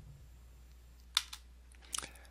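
Two quick clicks a little over a second in and a fainter one near the end, over a low steady hum.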